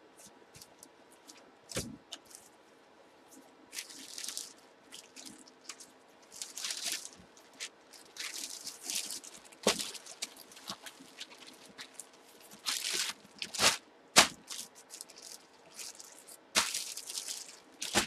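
Clear plastic bag crinkling in irregular bursts as a football jersey packed inside it is folded by hand, with a few sharp knocks in between.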